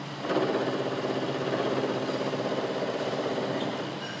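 Vertical milling machine's end mill cutting across the workpiece in one pass: a steady machining sound with a fast, even pulsing starts just after the opening and stops near the end.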